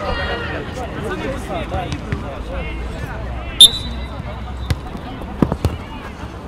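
Small-sided football on artificial turf: players shouting, a short shrill whistle blast about three and a half seconds in, the loudest sound, then several dull thuds of the ball being kicked near the end.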